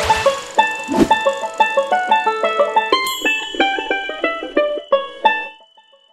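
Bright intro jingle of quick, short pitched notes with a swish near the start and another about a second in, thinning out and fading away near the end.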